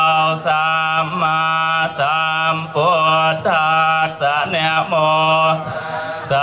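Buddhist monks chanting in Pali, their voices sung in long held tones over a steady low voice, heard through the microphone and amplification. The chant breaks briefly for breath just before the end.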